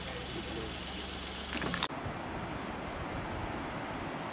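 A vehicle engine idling with a steady low hum, a few sharp clicks, then an abrupt change about two seconds in to a steady rushing noise.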